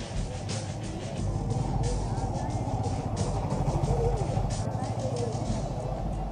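Street noise at a roadside: traffic running steadily, with voices in the background.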